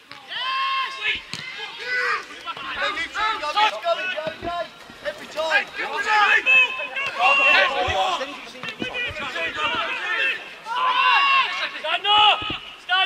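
Men's voices shouting indistinct calls across an outdoor football pitch, almost without pause, with a few short knocks among them.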